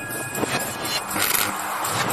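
Whoosh sound effects of an animated like-and-subscribe card, swelling twice, with music faintly under them.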